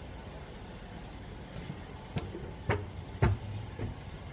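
Footsteps on pavement, four steps about half a second apart in the second half, over a steady low rumble of vehicles.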